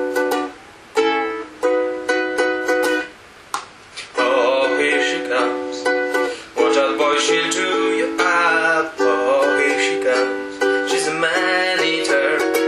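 Ukulele strummed in an instrumental break: choppy chord stabs with short stops over the first few seconds, a brief gap about three seconds in, then steady continuous strumming.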